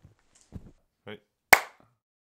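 A single sharp clap about one and a half seconds in, ringing off briefly. Before it come a few faint short rustles and knocks.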